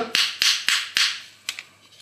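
A small wooden mallet tapping the pivot of a folding knife (Ontario Model 1) to knock out the blade's pivot screw: about four quick taps a third of a second apart, then one more a little later.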